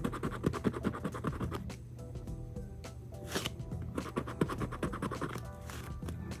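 A lottery scratch-off ticket being scratched with a round scratcher tool: runs of quick scraping strokes, with a thinner stretch in the middle, over background music.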